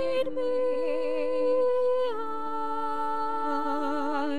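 Two women's voices singing long held notes in harmony, with vibrato, both moving to new notes about two seconds in.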